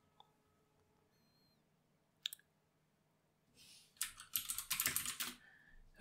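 Typing on a computer keyboard: a quick run of keystrokes about four seconds in, entering a short terminal command. A single click comes about two seconds in.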